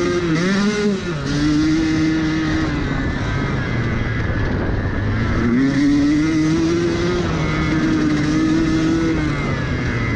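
Off-road motorcycle engine running under throttle on a gravel trail, heard from on the bike. The revs dip and pick up about a second in, then hold fairly steady. They slacken a few seconds in and climb again just past the halfway point. A steady rush of wind and tyre noise runs underneath.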